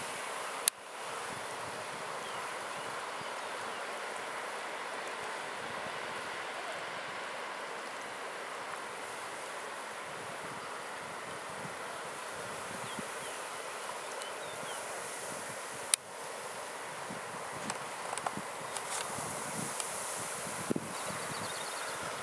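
Steady outdoor background hiss, with a sharp click under a second in and another about sixteen seconds in.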